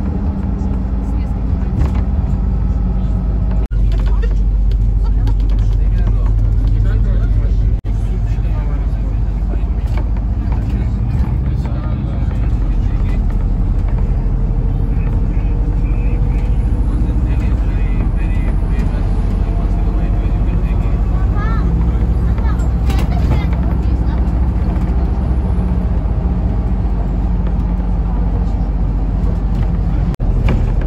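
Steady low rumble of a bus engine and road noise heard inside the passenger cabin while riding, with faint voices, and two brief dropouts in the first eight seconds.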